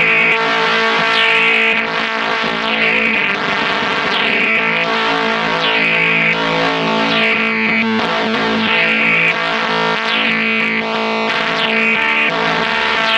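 Electric guitar played through the Chase Bliss Audio × ZVEX Bliss Factory two-germanium-transistor fuzz. It holds distorted, sustained notes, with a bright attack that falls away about once a second.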